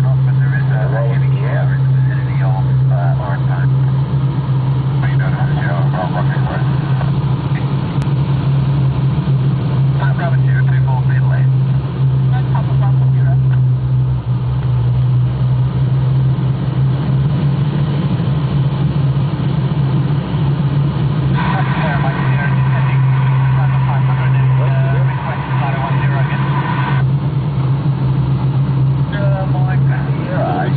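A steady low drone from the tug plane's engine ahead, mixed with air rushing over the canopy, heard from inside a glider cockpit on aerotow.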